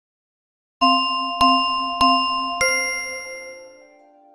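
Intro chime jingle: four bell-like struck notes about half a second apart, the fourth higher, ringing on and fading away.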